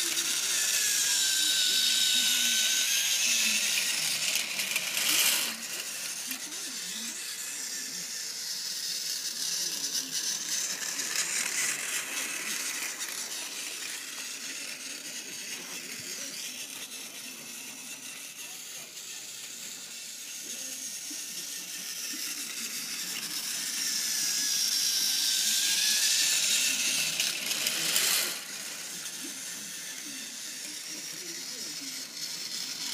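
Battery-powered Tomy toy train engine whirring as its small motor and gears drive it along plastic track. The whir grows louder twice, near the start and again late on, each time as the engine runs close, and falls away suddenly about five seconds in and again near the end.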